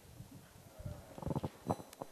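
Faint room noise: scattered low bumps and rustles, with a brief faint murmur of voices a little past halfway.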